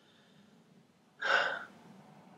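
A short, sharp intake of breath through the mouth, about half a second long, a little over a second in, with near silence before it.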